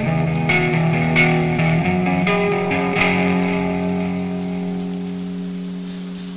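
Music: a slow guitar passage of picked notes over held, ringing chords, gradually fading away.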